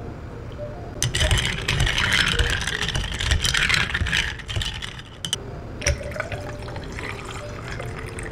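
A long spoon stirring ice in a tall glass of iced latte: a dense run of clinks and rattles of ice against glass, loudest from about a second in for about three and a half seconds, then lighter clinks. Near the end water pours over ice into a second glass.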